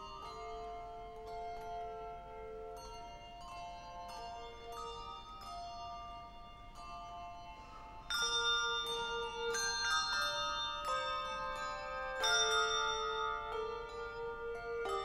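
Handbell choir ringing a piece, many bell notes struck and left to ring over one another. The playing grows clearly louder about eight seconds in.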